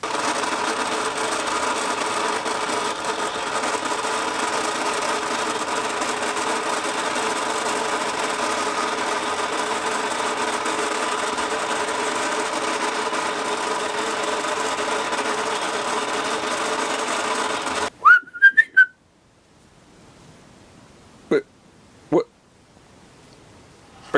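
Battery-operated Marx Big Alarm fire truck toy's electric motor and gear drive whirring steadily as it winds the string that raises a toy fireman up the ladder. It cuts off abruptly near the end with a short rising squeak and a few sharp clicks, and two more single clicks follow.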